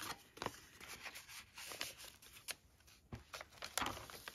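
Paper handling on a handmade journal: rustling, light swishes and small taps as a tag is slid into a paper page pocket and the pages are turned, with a brief cluster of crisp rustles near the end.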